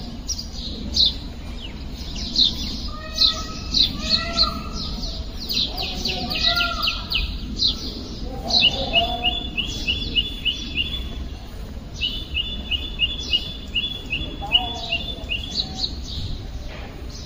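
Small birds chirping and trilling: quick falling chirps throughout, and two runs of rapid repeated notes, one about halfway through and one near the end.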